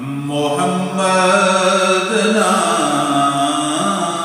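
A man's voice chanting an Urdu naat in long, drawn-out notes that slide slowly up and down in pitch.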